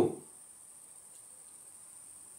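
A man's voice trails off at the very start, then a pause with only a faint, steady high-pitched whine in the background.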